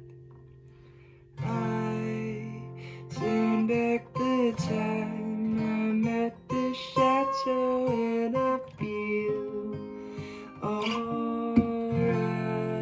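Acoustic guitar playing an instrumental passage: a held chord rings out and fades, then a new chord is struck about a second and a half in, followed by a picked single-note melody and a fresh chord near the end.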